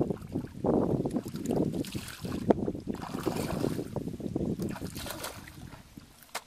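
Footsteps wading and sloshing through shallow muddy water, with some wind on the microphone and a single sharp knock about two and a half seconds in; the sloshing dies away near the end.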